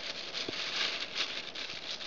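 Clear plastic bag crinkling and rustling as hands work at the climbing rope tied around it, with a small click about half a second in.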